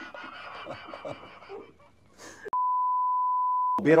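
Censor bleep: a single steady beep at one pitch, about a second and a quarter long, that cuts in and off abruptly in the second half, after faint low talk.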